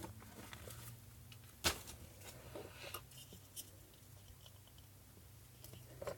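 Faint handling of a small black plastic air-pump housing: light scattered clicks and ticks, with one sharper click nearly two seconds in, over a low steady hum.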